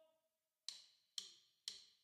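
Drumsticks clicked together in a count-in to the song: three sharp, evenly spaced clicks about half a second apart, beginning under a second in.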